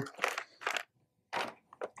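Clear plastic packaging bag with a cable inside crinkling in four short rustles as it is handled and lifted out of the box.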